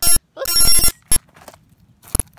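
Thrown rock hitting and skittering over thin lake ice: a sharp hit, a longer ringing rattle, then another hit about a second in, each carrying high ringing tones.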